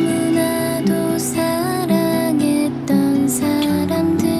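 Slow, gentle background music from the drama's soundtrack: a sustained melody that glides between held notes over soft acoustic guitar.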